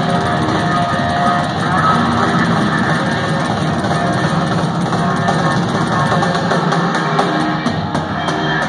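Live hard rock band playing loud: electric guitar over bass and a drum kit, with regular cymbal hits.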